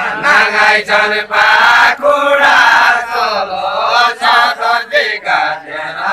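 Deuda folk song sung loudly by a group of voices together as a chant, in long held phrases with a wavering pitch.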